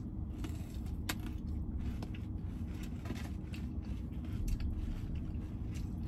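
Scattered small, sharp crunches of people biting and chewing a Dubai chocolate bar, whose filling of shredded kataifi pastry is very crunchy, over a steady low hum inside the car.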